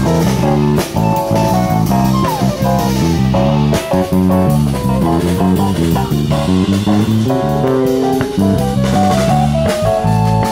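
Live jazz quartet playing: an electric guitar carries a melodic line over bass and drum kit, with a downward sliding note about two and a half seconds in.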